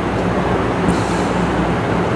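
Steady rumbling background noise, with no words over it.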